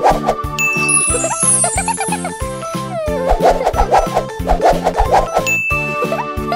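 Upbeat cartoon background music with a steady beat, and a twinkling chime sound effect about half a second in that cascades downward in pitch.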